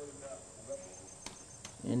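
Faint insect chirping outdoors: a quick, even run of short high-pitched pulses in the second half, over a steady thin high whine. A man's voice starts at the very end.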